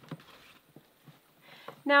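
Faint squelching and dripping of soaking-wet clothes being squeezed out by hand: a scatter of small, soft wet ticks.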